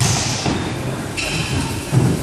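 Dull thuds from bubble-soccer play, inflatable bubbles and the ball being hit, echoing in an indoor sports hall, with the strongest thud near the end. Players' voices mix in throughout.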